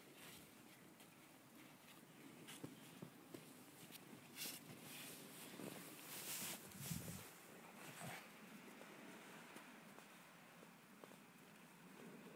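Near silence with faint scattered crunches and rustles of snow being handled and trodden, a few brief louder rustles in the middle.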